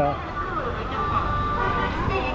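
Street ambience: a steady low rumble of road traffic with faint voices of people around, and a short steady high tone in the middle.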